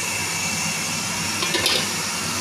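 Steady hiss of the open idli steamer on the stove. About one and a half seconds in comes a brief, light metal clink as the idli plate is handled.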